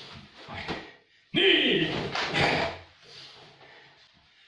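A man's loud karate shout (kiai), starting suddenly about a second and a half in and falling in pitch, lasting just over a second.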